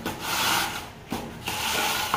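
Metal screed straightedge scraping across fresh plain cement concrete (PCC) in back-and-forth strokes as the floor is levelled, with a short break about a second in.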